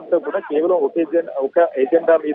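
Speech only: a reporter speaking over a telephone line, the voice narrow and thin.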